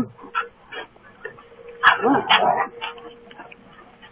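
Border Collie barking twice in play, two sharp barks close together about two seconds in, with fainter short sounds from the dog before and after.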